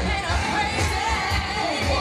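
Live pop/hip-hop song played loud through a concert PA: singing over a heavy bass beat, recorded from within the audience.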